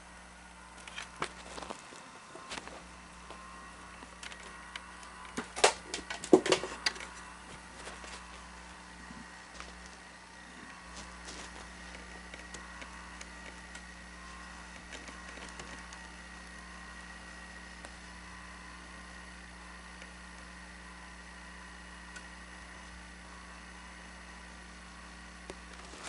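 Scattered clicks and taps from hands working on the circuit board of a Sony SL-5000 Betamax deck, loudest in a short cluster about six seconds in, over a steady electrical hum from the running machine. After about eight seconds only the steady hum remains.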